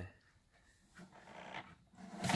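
Near silence, with a faint breathy rustle starting about a second in.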